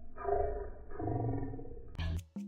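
A woman's long, drawn-out sleepy yawn out loud, coming in two stretches of about a second each.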